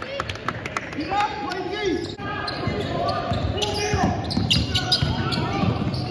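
A basketball bouncing repeatedly on a hardwood court in an echoing gym, with background voices of players and spectators.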